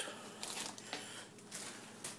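Faint handling noises: a few soft rustles and light taps as slices of deli corned beef are laid on sandwiches on a paper plate.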